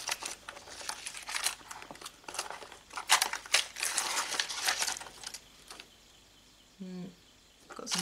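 Plastic sheets of adhesive gems and enamel dots crinkling and clicking as they are handled over a plastic storage box. The rustling stops about five and a half seconds in. Shortly before the end there is a short hummed voice sound.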